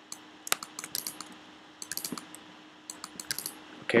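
Computer keyboard typing: scattered key clicks in short clusters, with a faint steady hum underneath.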